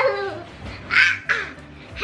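A young girl's excited squealing laughter: a falling cry at the start, then a sharp, high, raspy squeal about a second in.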